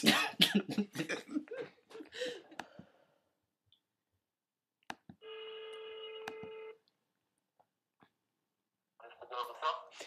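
A telephone ringback tone on an outgoing call: a few clicks, then a single steady ring of about a second and a half, heard about five seconds in, while the called line rings before it is answered.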